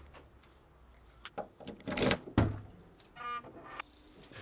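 Keys jangling and the trunk of a Subaru Impreza being unlatched and opened, with a loud knock about two seconds in and another just after, then a short squeak a little after three seconds as a bag is handled in the trunk.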